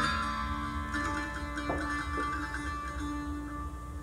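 Lap dulcimer notes ringing out and fading after a final strum, with a steady low drone held under them and a couple of soft plucked notes partway through.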